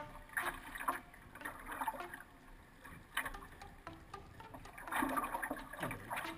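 Surfski paddling on choppy water: the wing paddle's blades splash in and out with each stroke over a steady wash of water along the hull, the loudest splash near the end.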